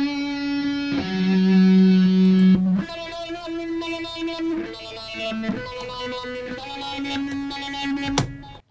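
Soloed electric guitar lead line played back from a recording session, slow single notes held one after another, run through Studio One's Auto Filter plugin with a step-pattern preset for a robotic kind of feel.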